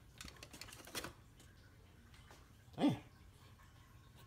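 Aluminium foil crinkling in a run of quick small crackles over about the first second, as the foil cover of a foil pan is handled; then faint room tone, and a man exclaims "Damn" near the end.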